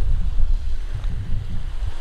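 Small sea waves lapping on a rocky shore, under a steady low rumble of wind on the microphone.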